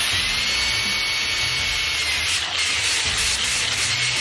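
Angle grinder with a 60-grit flap disc running steadily with a high motor whine and a grinding hiss, sanding rust off a steel brake drum.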